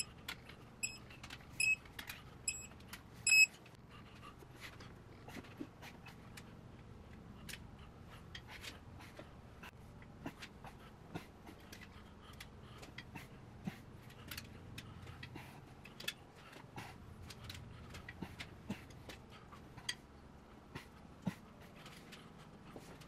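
A digital torque wrench giving a run of short, high beeps through the first three or so seconds, signalling that the crankshaft main bearing cap bolts have reached the set torque. After that come scattered light clicks and ticks from a ratchet and socket working on the bolts.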